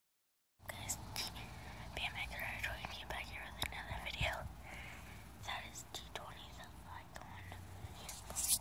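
A person whispering in short breathy phrases, starting about half a second in, with a few soft clicks.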